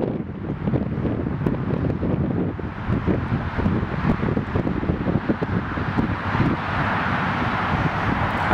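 Wind buffeting the microphone in a steady, fluttering rush, heaviest in the low end.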